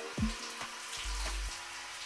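Shower water spraying from an overhead shower head, a steady hiss of falling water.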